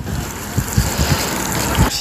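Steady outdoor noise from handheld amateur footage, with wind buffeting the microphone in irregular low thumps.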